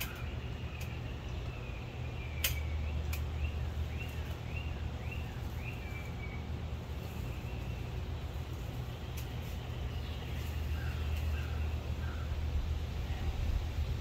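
A steady low outdoor hum, with a run of short rising chirps a few seconds in, a few more near the end, and a couple of sharp clicks early on.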